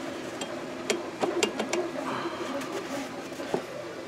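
A few light, sharp clicks and taps as hands handle the metal parts of a mini milling machine, with faint rustling between them. Most of the clicks come about a second in, and one more comes near the end.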